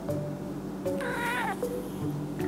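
A cat gives one short, wavering meow about halfway through, over light background music.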